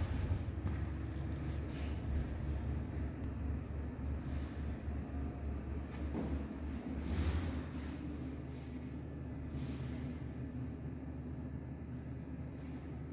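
Low steady rumble of Otis elevator machinery as a car travels in the shaft after a call, with a few faint clicks; it swells about seven seconds in and eases off after.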